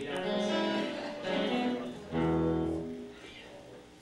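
Guitar chords strummed three times: one at the start, one about a second in, and a louder, deeper one about two seconds in. Each is left to ring and die away.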